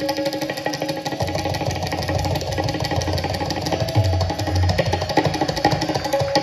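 Tabla solo in fast drut teentaal: a dense run of rapid strokes, with the deep bass of the bayan coming back in about a second in. Underneath, a harmonium plays the steady repeating lehra melody.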